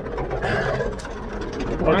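Tractor engine running steadily, with a short hissing noise about half a second in.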